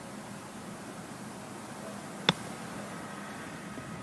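A golf club striking a golf ball on a short chip from just off the green: one sharp, crisp click about two seconds in, over a steady outdoor hiss.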